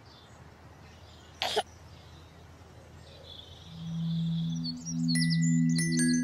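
Soft background music fades in just past halfway. It has held low notes, joined about five seconds in by bird-like chirps and chime strikes. Before it there is only faint room noise and one short burst of noise about a second and a half in.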